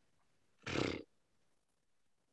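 A man's short breathy exhale, like a thinking sigh, close to the microphone, lasting under half a second about two-thirds of a second in; otherwise near silence.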